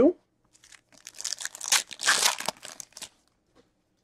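Foil wrapper of a Panini Select UFC trading-card pack being torn open and crinkled as the cards are pulled out: about two and a half seconds of crackling rustles, loudest in the middle.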